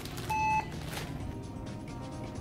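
A single short beep from a checkout barcode scanner about a third of a second in, over background music.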